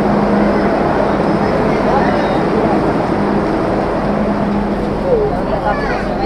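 Steady running noise of a metro train standing at the platform as passengers crowd through its doors into the carriage, with a low hum that comes and goes and faint voices in the crowd.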